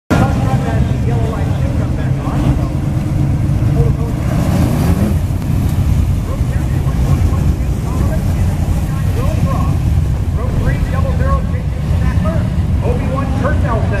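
Winged dirt-track sprint car engines running, with a loud, steady low rumble and one engine revving up about four to five seconds in.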